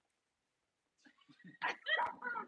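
Near silence for about the first second, then short, faint voice sounds coming and going, a little louder near the end.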